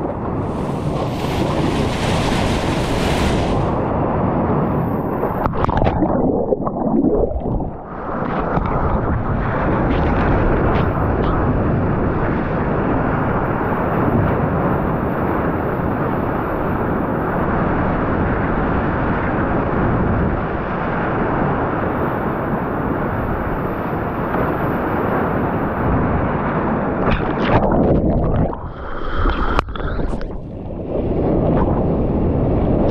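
Whitewater rushing past a surfboard as a surfer rides a breaking wave, with heavy wind noise on an action camera's microphone. The rush dips briefly about a quarter of the way in and again near the end.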